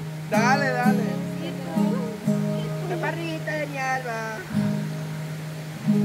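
Acoustic guitar strummed, chords struck one at a time and left to ring, with voices talking over it.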